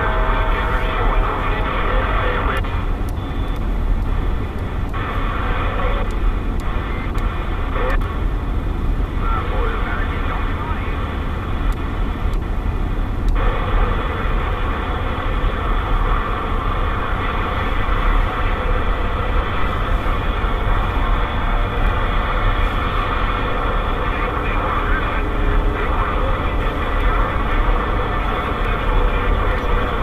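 CB radio receiver on the 27 MHz AM band giving out continuous hiss and static, with garbled, distant voices breaking through it, over the low road rumble of the car.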